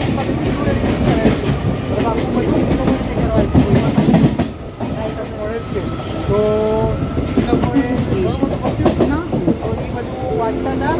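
Medha-electrics EMU local train pulling away from a station, heard from inside the coach: a steady rumble with wheels clattering over the rails. Passengers' voices are mixed in.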